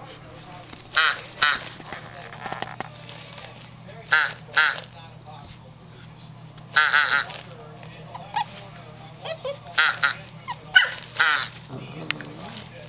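Eight-week-old German Shorthaired Pointer puppy barking in play: short, high-pitched barks, mostly in pairs, coming every few seconds.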